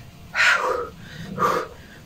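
A woman puffing out three short, heavy breaths in a row, out of breath.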